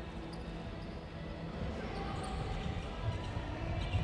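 A basketball being dribbled on an indoor gym court, with low thuds over the hall's steady background noise.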